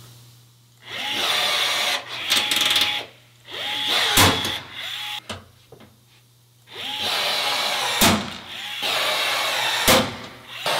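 Cordless drill running a pop-rivet setting attachment in several short runs, each spinning up with a rising whine. Three sharp snaps, about four, eight and ten seconds in, as rivet mandrels break off while the rivets set into the van's sheet metal.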